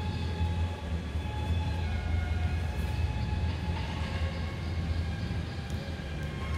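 A steady low hum, with faint thin high tones coming and going above it.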